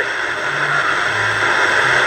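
Steady hiss and static from an AM radio broadcast on a portable CD radio tuned to 1639 kHz, with a faint low hum underneath.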